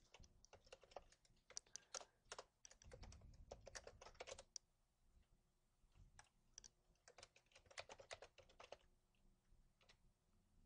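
Quiet typing on a computer keyboard: quick, irregular keystrokes in two runs, with a pause of about a second and a half in the middle.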